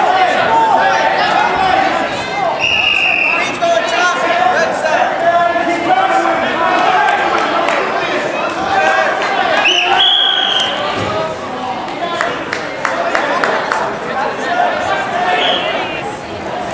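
Shouting voices of spectators and coaches echoing in a gymnasium during a wrestling bout, with occasional thuds. A referee's whistle sounds twice, each blast about a second long: about three seconds in and about ten seconds in.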